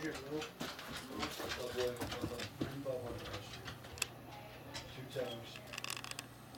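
Men talking, partly in short murmured words, with a few light clicks and a low steady hum underneath from about two and a half seconds in.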